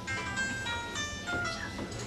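Telephone keypad touch tones pressed in quick succession to play a tune: a run of short steady beeps that change pitch every few tenths of a second.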